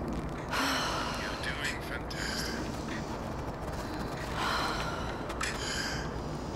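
A woman taking deep breaths through her mouth in the Wim Hof breathing method: two long breaths about four seconds apart, with a shorter one between.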